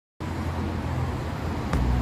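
Outdoor city ambience: a steady low rumble of road traffic that cuts in suddenly from silence just after the start.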